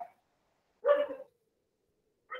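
A single short bark, like a dog's, about a second in.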